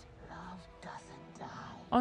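Faint dialogue from the TV drama, quietly spoken, with soundtrack music beneath it. A woman's close, loud "Oh" cuts in at the very end.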